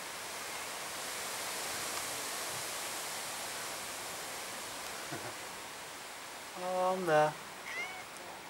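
A domestic cat meows once near the end, a drawn-out call that drops in pitch as it ends, followed by a brief higher rising call.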